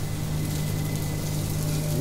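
Sliced onions sizzling in oil on cast iron sizzler plates over gas flames, a steady hiss with a steady low hum underneath.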